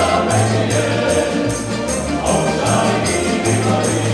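Male vocal ensemble singing a Serbian folk song in close harmony, over an acoustic guitar strummed in a steady rhythm with bass notes.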